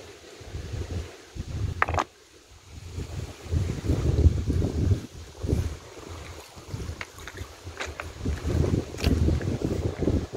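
Wind buffeting the microphone in uneven gusts, with a few sharp clicks.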